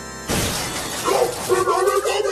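A sudden loud smash like breaking glass cuts off a held synth chord about a quarter second in, its noisy tail running on. About a second in, a wobbly pitched voice calls out over it.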